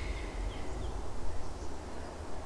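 Low, steady background rumble with faint hiss and no distinct event.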